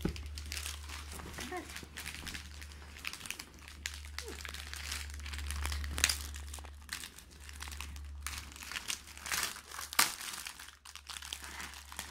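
Plastic wrapping around a magazine and its packaged headphones being crinkled and handled as the pack is opened, with irregular crackling and a couple of sharper snaps about six and ten seconds in.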